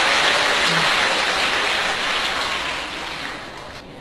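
A large audience applauding, the clapping thinning and fading out near the end.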